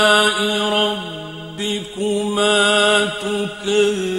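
Quran recitation in a single voice, chanted melodically in long held notes that slide from pitch to pitch, with short breaks about a second and a half in and again near the end.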